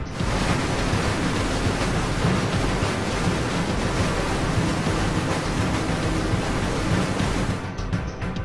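Loud rush of dredged sand-and-water slurry gushing from a pipe into a hopper dredger's hopper, with music underneath; it stops suddenly near the end.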